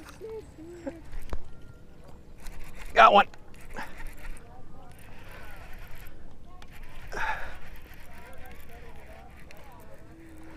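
A man's voice in two short untranscribed exclamations, about three and seven seconds in, with fainter wavering sounds between them.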